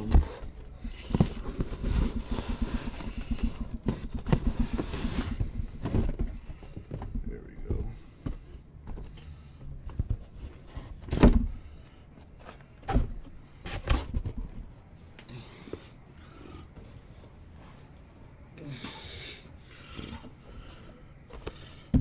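Cardboard hobby boxes being handled and pulled out of a shipping case. Rustling and scraping of cardboard is followed by several sharp knocks as boxes are set down, the loudest about eleven seconds in.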